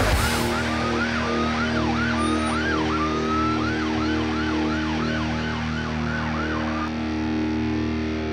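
Police vehicle siren sounding, its pitch sweeping up and down, slowly at first and then quickening to about two sweeps a second, before stopping near the end. Steady sustained music notes run underneath.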